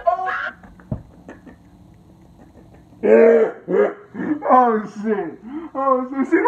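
People's voices, quiet for about two seconds after a single low thump about a second in, then loud voices again from about halfway.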